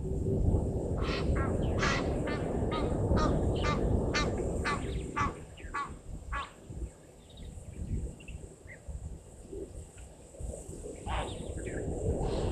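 A bird calling in a rapid series of about a dozen loud, repeated honking notes over about five seconds, with two more calls near the end, over a low rumble of wind noise on the microphone.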